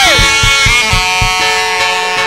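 Live church praise band music: a held chord rings out while several drum strokes land in the first second.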